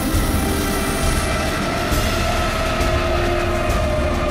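A freight train rolling past, its wheels rumbling steadily on the rails, under background music that holds long steady notes.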